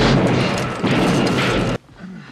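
Two loud gunshots about a second apart, each ringing on with a heavy low rumble, cut off suddenly near the end.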